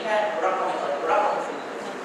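Speech only: a man lecturing into a handheld microphone.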